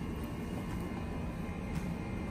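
Steady low outdoor background rumble, of the kind distant traffic or aircraft make, with no distinct event standing out.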